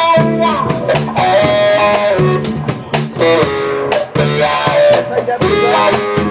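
Live blues trio playing an instrumental passage: an electric guitar, a Paul Reed Smith McCarty through a Koch Studiotone amplifier, plays lead lines with bent notes over upright bass and a drum kit keeping a steady beat.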